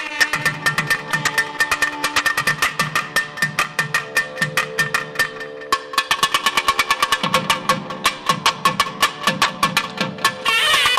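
A pair of thavil barrel drums playing a fast, dense percussion passage of sharp strokes over a steady drone, while the nadaswaram melody rests.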